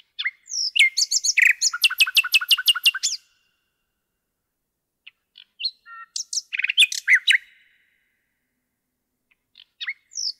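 Common nightingale singing two song strophes. The first opens with a few scattered notes and runs into a fast series of about a dozen loud repeated notes, about seven a second. The second starts about five seconds in, with scattered notes building to a short loud burst.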